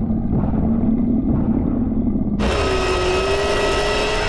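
Sound-designed soundtrack: a low engine-like rumble with a steady hum, which cuts off abruptly about two and a half seconds in. A bright electronic effect of many ringing high tones over a low wavering drone takes its place.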